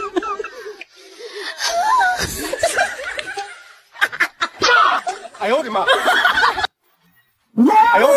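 People laughing and talking in short bursts, with a brief gap of silence near the end.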